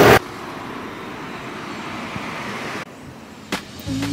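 Street traffic noise, a steady hiss of road sound that drops off suddenly nearly three seconds in, with a single click shortly after.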